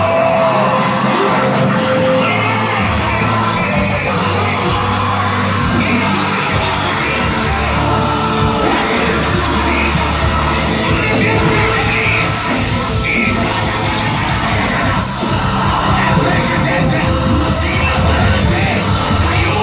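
Live gospel worship band, with drums, keyboard and bass, playing loud through a PA while singers lead on microphones, with shouted and sung voices over it. The bass comes in heavier about three seconds in.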